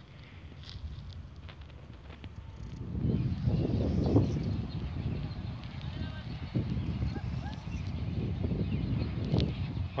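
Low, uneven rumbling of wind buffeting the microphone, with irregular soft thumps of footsteps and handling while walking across a grass lawn, louder from about three seconds in.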